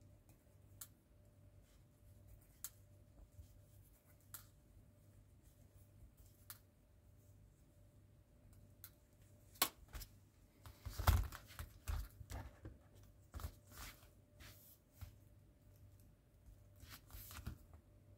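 Faint, scattered clicks of small metal model bolts being twisted off their sprue, then a run of louder clicks and knocks from about ten seconds in as small model parts are handled on a tabletop.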